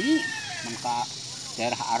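Men talking in short bursts of conversational speech, with a steady high hiss in the background.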